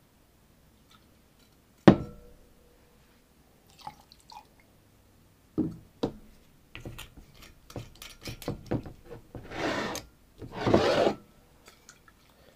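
Glass bottles and barware handled on a bar top. There is a sharp clink with a brief ring about two seconds in, then knocks as a bottle is set down, and a run of small clicks. Near the end come two rasping bursts as a screw cap is twisted off a liqueur bottle.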